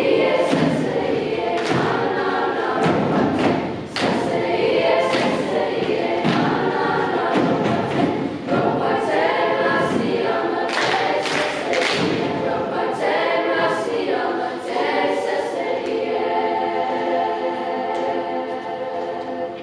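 Youth choir singing in harmony without accompaniment, with repeated percussive thumps through the singing; near the end the voices settle on a held chord.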